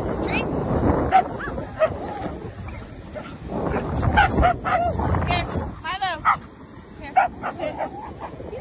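Dogs at play giving a string of short yips and whines, some sliding up and down in pitch.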